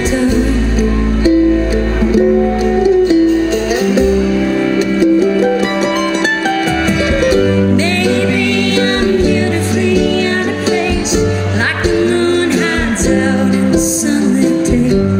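A live bluegrass-style band plays a song with mandolin, fiddle, upright bass, electric guitar and drums.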